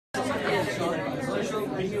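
Background chatter: several people talking at once in a crowded room, with a voice starting to ask a question at the end.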